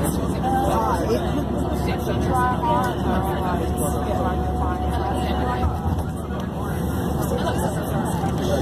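Motorway coach running at speed, heard inside the cabin: a steady low engine and road rumble, with indistinct voices over it in the first half.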